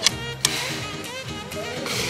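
Background music, with two sharp clicks about half a second apart near the start: the bolt of a Black Panther PCP air rifle being worked to load a pellet before test-firing.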